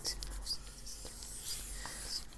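Close-miked ASMR trigger sounds: soft scratching and rustling with a few short clicks and brief whisper-like hisses.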